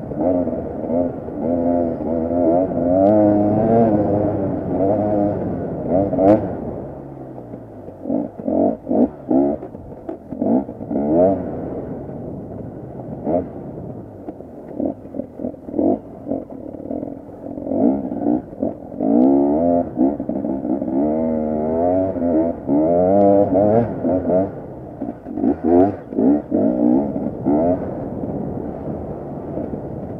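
KTM 250 EXC two-stroke enduro motorcycle engine revving up and down as it is ridden over rough dirt trail. The pitch repeatedly climbs and drops with the throttle, with a choppier stretch of short, sharp throttle blips in the middle.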